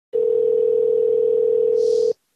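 Telephone line tone: one steady low tone held for about two seconds, then cut off abruptly, with a brief hiss near the end.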